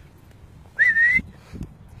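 A person whistling once, a short clear note that scoops up and then rises slightly, calling a dog during fetch.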